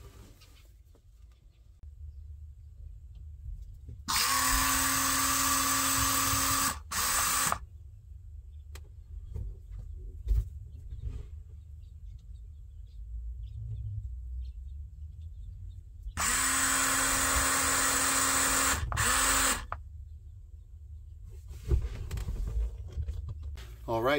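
Electric surf tab actuator's geared motor whining steadily as it drives its shaft in and out, in two runs of nearly three seconds each, about twelve seconds apart, each followed by a brief short burst. Its running on the switch shows that the actuator and the wiring up to the dash work.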